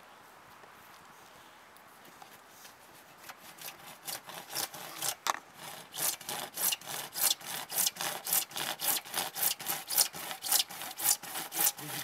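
Hand saw cutting into a white PVC pipe to start a cut: light, faint strokes begin about three seconds in, then become louder, steady back-and-forth strokes at about two a second.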